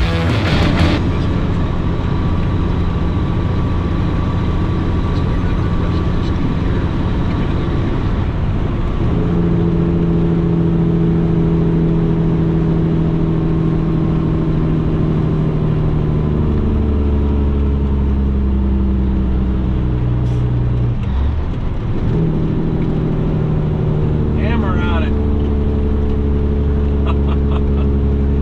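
The cabover semi truck's diesel engine runs steadily, heard from inside the cab, as the truck drives. The engine note changes pitch in steps and drops out briefly a little past two-thirds of the way through, as the driver changes gears.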